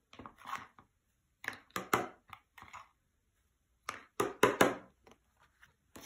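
Card panel tapped against a hard surface in four short runs of sharp knocks, shaking off the loose glitter after glitter has been sprinkled onto a glued edge.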